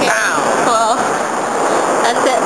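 Two brief voice sounds, a falling one just after the start and a wavering one near the middle, over a steady rushing background noise.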